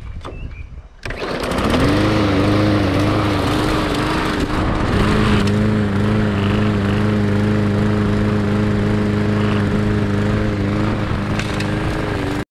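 Gas walk-behind lawn mower engine starting about a second in, then running steadily at a constant speed.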